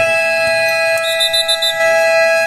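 Basketball game buzzer sounding one long, steady, loud tone as the countdown runs out, marking the end of the period.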